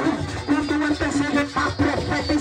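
Live Latin-style worship music through PA speakers: percussion and a steady bass, with a woman's voice carried over it on a microphone.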